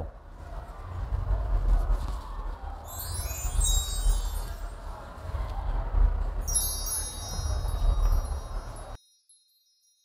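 Bright, shimmering chime sound effects over a low rumble: a sweep of chimes about three seconds in, and a sustained shimmer later. About nine seconds in, everything cuts off to near silence.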